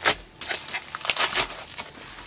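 Clear plastic wrapping crinkling in irregular bursts as it is pulled off a boxed hanging plant, the loudest just after the start and again a little past halfway.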